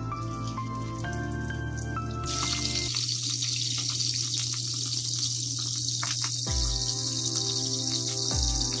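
Background music, joined about two seconds in by a steady sizzle of fish pieces shallow-frying in hot oil in a pan.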